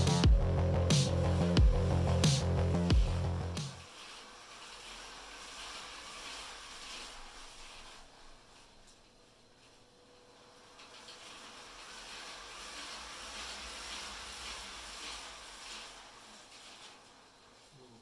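Electronic music with a heavy beat cuts off suddenly about four seconds in. After it comes a faint, steady buzzing whir from the spinning saber's motor-driven ring, grinding against more resistance than it should because one of its ring pieces is a little off centre.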